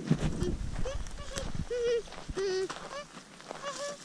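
A child's voice making short wordless humming notes, about six brief nasal tones, with a low rumble in the first second and a half.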